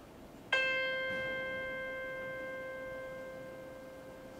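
A single musical note, struck once about half a second in and left to ring, fading slowly: one steady pitch with a clear set of overtones. It is the first tone of a demonstration of the octave interval.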